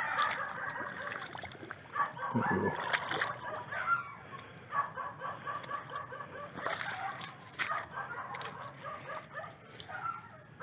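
Chickens clucking with a rooster crowing, short repeated calls coming in quick runs, with a few sharp clicks.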